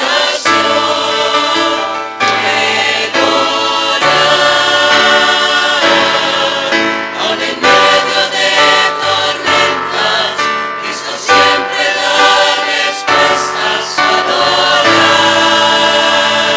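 Mixed church choir of men's and women's voices singing a hymn in held chords, the notes changing every second or two.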